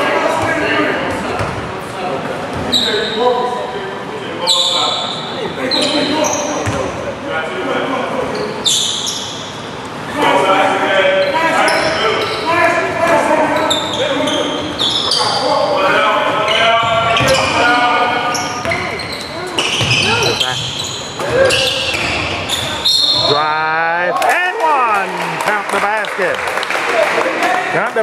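Basketball game on a hardwood gym floor: a ball dribbling and bouncing, sneakers squeaking, and players and onlookers calling out, with the echo of a large gym.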